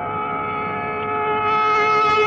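Carnatic classical concert music in raga Thodi: one note held long and steady, without the oscillating gamaka ornaments around it, its tone turning brighter about one and a half seconds in.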